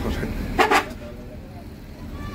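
A vehicle horn gives a short double toot a little over half a second in, over the steady low rumble of the bus's engine and road noise heard from inside the cab.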